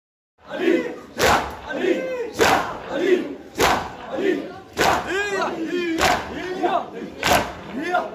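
A crowd of mourners doing matam, beating their chests with open hands in unison, one loud strike about every 1.2 seconds. A crowd of men chants between the strikes. It starts about half a second in.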